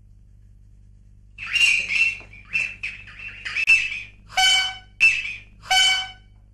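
A man's high-pitched squeals, about eight short cries in quick succession, starting about a second and a half in.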